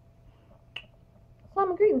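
A single sharp finger snap about three-quarters of a second in, followed by a woman starting to speak.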